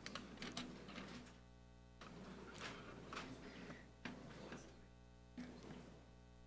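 Faint rustling and clicking handling noise in four short spells, over a steady low electrical hum.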